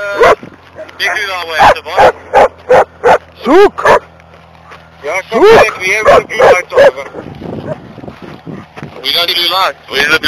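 Police K9 barking and yelping in repeated short runs of loud, arching barks, with a steady low hum underneath for the first several seconds.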